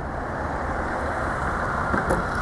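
Steady low rumble of an idling vehicle engine, growing slightly louder.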